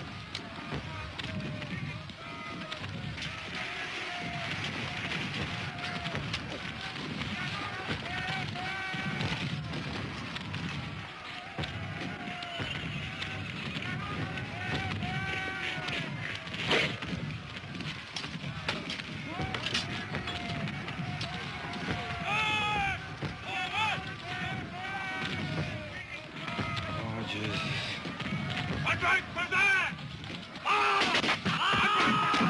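Many men shouting and yelling over one another, with no clear words, in a steady din of battle noise. A single sharp crack is heard about 17 seconds in, and the shouting grows louder and denser in the last third.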